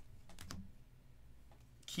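A few faint clicks and flicks of trading cards being handled and shuffled by hand: one at the start and a quick cluster of about three about half a second in.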